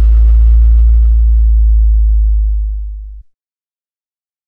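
Deep synthesized bass tone from a logo intro sting, held loud and then fading, cutting off about three seconds in, with a fading hiss above it early on.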